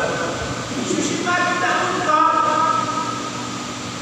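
A man's voice lecturing into a microphone over a loudspeaker, with some drawn-out held tones and a steady low hum underneath.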